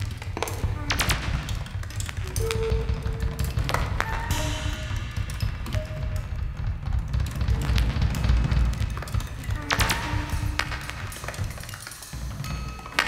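Experimental percussion music: dense drum rolls and a heavy low rumble, cut through by sharp hits, with short held tones appearing here and there.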